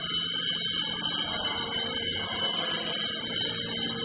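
Steady high-pitched electronic whine and hiss, the loudest thing heard, with a faint held low note beneath it in the pause between sung hymn verses.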